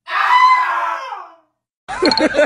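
A single shrill, scream-like cry lasting a little over a second, fading and dropping in pitch at the end, then a brief silence.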